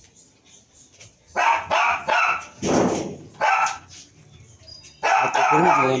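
A dog barking about four times in quick succession, then a voice near the end.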